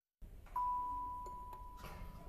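Out of dead silence, a single bell-like chime note is struck about half a second in. It rings as one clear, steady pitch and fades slowly.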